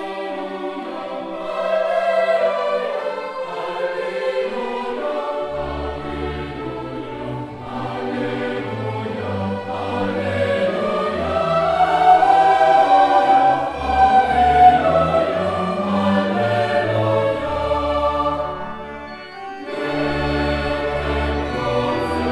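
Choir singing with orchestral accompaniment in a reverberant church. A low bass part comes in about five and a half seconds in, and the music thins briefly near the end before going on.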